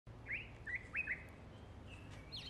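Birds chirping outdoors: four short, quick chirps in the first second or so, then only faint background.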